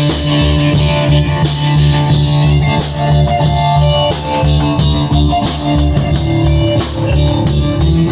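Live band playing an instrumental passage: electric bass and drum kit keep a steady repeating beat under sustained keyboard chords.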